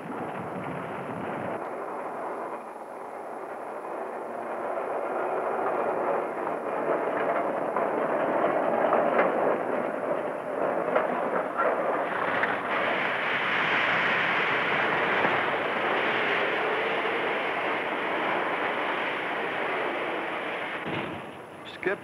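Rough industrial rumble of hot coke being dumped from the coke ovens into a quenching car. About twelve seconds in it turns into a louder, brighter hiss of water sprays and steam as the coke is quenched.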